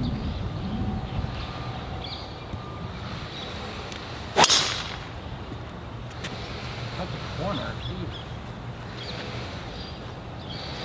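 A driver striking a golf ball off the tee: one sharp crack about four and a half seconds in, with a brief ring after it.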